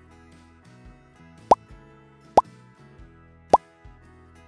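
Background music with three short, loud pop or bloop sound effects, each a quick rising blip, spaced about a second apart.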